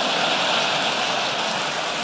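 Large audience laughing and clapping in a hall, a steady wash of crowd noise.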